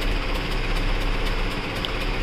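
Diesel engines of concrete transit mixer trucks running steadily at idle, a constant low rumble.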